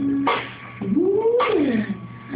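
Opening of a song on a small drum kit, with sharp drum hits about once a second. In the middle, a wailing sound glides up in pitch and back down over about a second.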